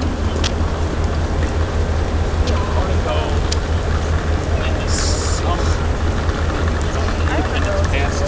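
Steady low outdoor rumble of street noise, with faint voices of people walking by and a brief hiss about five seconds in.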